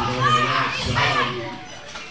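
Children's voices shouting and calling out from an audience, with other crowd voices and a low steady hum beneath.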